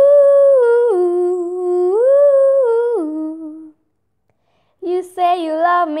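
A girl's unaccompanied wordless vocal, an 'ooh' line that steps up to a higher note and back down twice, stopping about three and a half seconds in. After a short silence she starts singing lyrics near the end.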